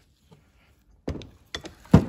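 Near silence for about a second, then a knock and a few quick clicks and knocks of a steel camshaft being handled and set down on a workbench. The loudest knock comes just before the end.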